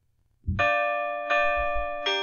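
Bells struck one after another: the first strike comes about half a second in, the second about three-quarters of a second later, each ringing on under the next.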